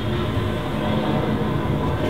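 Steady rumble of a moving train carriage, even and unbroken, strongest in the low end.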